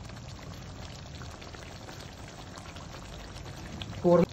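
Thick chicken korma gravy simmering in a non-stick wok, a steady soft bubbling with faint crackles. This is the final stage of cooking, with the water cooked off and the gravy thickened.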